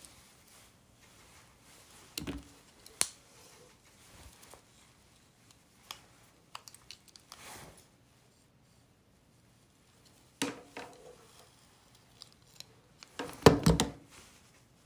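Scattered small clicks and brief rustles of a clamp curling iron and hair being handled while curling, with a louder cluster of knocks near the end.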